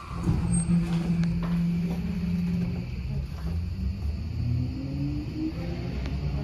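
Tokyo Metro 17000 series subway train pulling away from a station, heard from inside the car: the traction motor drive holds a steady hum, then whines rising in pitch from about halfway through as the train accelerates.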